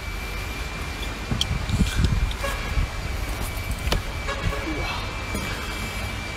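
A steady low background rumble with a faint, thin high-pitched tone held through it. A few small clicks come from a cooked sea snail shell being handled and pried open by hand.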